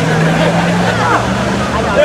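A motor vehicle's engine running on the street, a steady low tone that steps up a little in pitch just over a second in and fades out near the end, with crowd voices over it.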